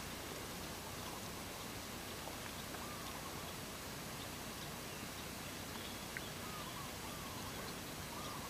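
Quiet, steady outdoor background hiss with a few faint short chirps scattered through it and one small click about six seconds in.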